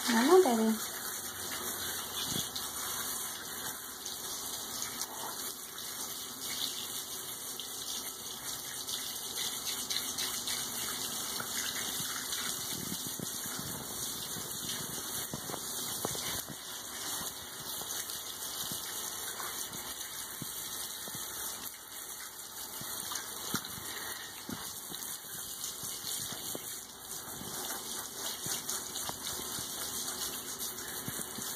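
A handheld shower sprayer running steadily, its spray held against a cat's wet fur and splashing into a bathtub while her shampoo is rinsed off. A short pitched cry bends up and down right at the start.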